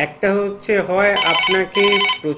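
A telephone ringtone on a phone-in line, heard under a voice. It is an electronic ring of steady high tones, coming in two short bursts in the second half.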